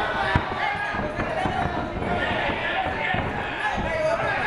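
Dull thuds of fighters' feet and strikes on an MMA ring canvas, the loudest about a third of a second in, under several voices calling out in a hall.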